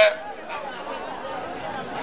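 A man's amplified speech through a microphone and loudspeaker cuts off at the very start, leaving the steady chatter of many voices in an outdoor crowd.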